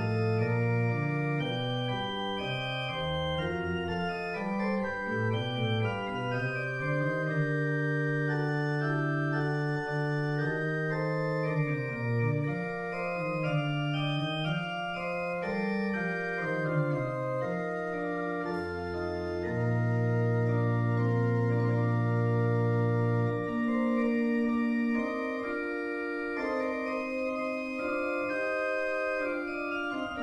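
Organ playing a Baroque-style prelude for full organ: held chords and moving lines over sustained bass notes. A long low bass note is held for about four seconds past the middle, and the bass drops out near the end while the upper parts carry on.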